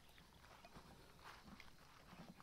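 Near silence, with a few faint soft ticks of a Rottweiler's paws stepping on grass.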